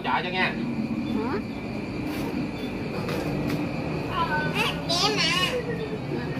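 Scattered voices of children and adults talking in short bursts, with a child's high voice around four to five seconds in, over a steady low background hum.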